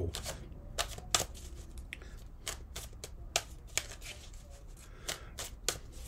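Tarot cards being shuffled and handled, a run of irregular light snaps and clicks of card stock.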